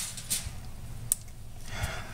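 Faint handling noises with a few light clicks, the sharpest about a second in, as bare hands pick up and handle a digital instant-read meat thermometer.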